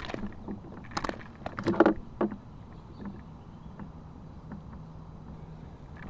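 A handful of sharp knocks and rustles in the first two and a half seconds as a bass is handled and weighed on a handheld scale in a kayak, then only quiet background with a faint low hum.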